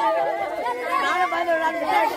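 Several people talking over one another at the same time: group chatter with no single clear voice.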